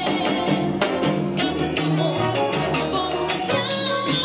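Live salsa band playing, with timbales and other percussion striking a steady rhythm over bass notes and keyboard.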